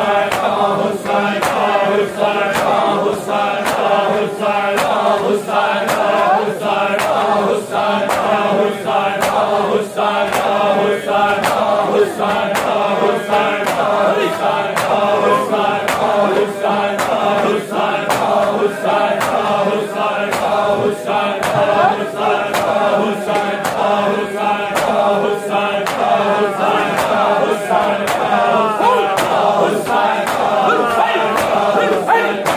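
A crowd of men doing matam, striking their chests with their hands together in a steady beat, while a noha is chanted by a reciter and the crowd.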